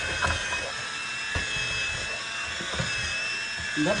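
Princess House 4-in-1 stick immersion blender running with a steady high motor whine, pushed up and down through boiled potatoes to mash them, with a few soft knocks along the way.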